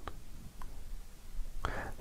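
A pause in a man's talk: low room noise with a couple of faint small clicks, then his voice starting again near the end.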